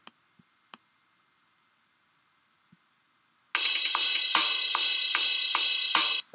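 A few faint clicks, then about three and a half seconds in a programmed GarageBand Rock Kit drum pattern starts playing back loudly: cymbals over snare and bass-drum hits, including a newly added double bass kick.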